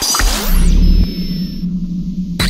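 Synthesized logo-intro sound effects: a deep bass hit starting about a quarter-second in, then a steady electronic hum with a thin high tone and a slow falling sweep.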